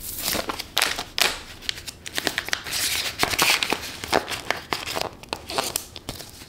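Crinkling and rustling of plastic as polymer banknotes are handled and slid into a clear plastic zip-pouch envelope, with many small clicks and taps.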